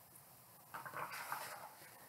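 A picture book's page being handled and turned: a soft rustle lasting about a second, starting a little under a second in.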